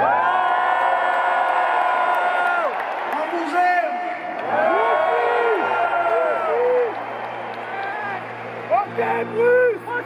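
Live solo acoustic guitar intro with long held notes for the first few seconds, then crowd whoops and cheers over the playing.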